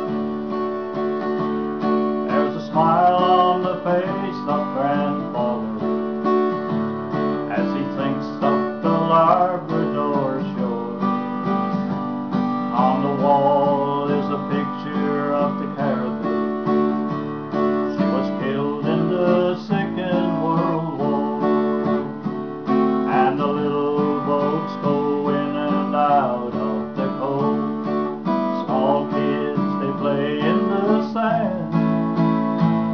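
Steel-string acoustic guitar strummed in a folk-song accompaniment, with a melody line coming in over it in phrases every few seconds.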